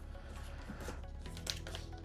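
Plastic trading-card cello pack crinkling as it is handled, with a few crisp crackles near the end as its tear strip starts to be pulled, over quiet background music.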